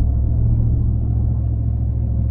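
Steady low rumble of road and engine noise heard inside a moving vehicle's cab.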